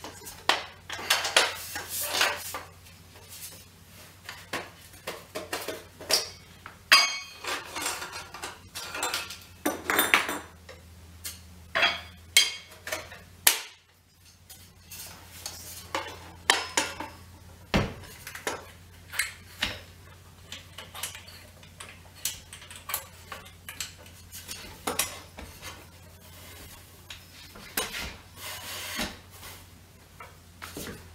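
Parts of a self-storing telescope and its pier being handled and unpacked: irregular clicks, knocks and rattles as pieces are taken out and the folding legs are opened.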